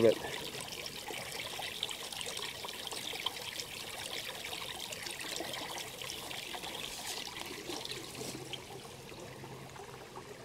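Spring water flowing out of a pipe and trickling into a shallow rocky pool, a steady light splashing that grows a little fainter near the end.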